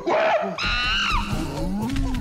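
A troop of cartoon mandrills calling over one another: many short rising and falling hoots, with one louder, higher screech about halfway through, over low thuds.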